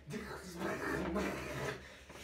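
A man's voice vocalizing in pitched stretches without clear words.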